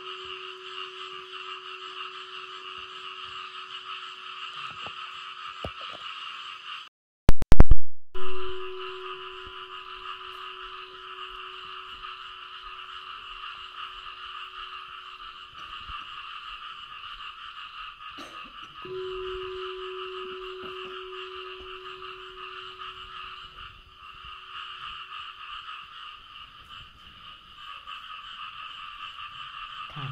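A chorus of frogs calling steadily in the pre-dawn dark, with a low steady tone that comes and goes beneath it. About seven seconds in, the sound cuts out briefly and a few sharp, very loud clicks are heard.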